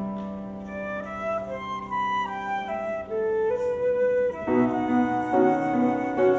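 Concert flute playing a slow melody of single held notes that steps downward over the first few seconds, over piano accompaniment. A held piano chord fades under the opening notes, and repeated piano chords come in about four and a half seconds in.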